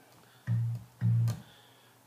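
Electric bass guitar, unaccompanied: two short plucked low notes about half a second apart, each cut off after about a third of a second.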